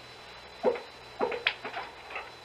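A small dog whimpering, with a few short whines about half a second in and again past the middle.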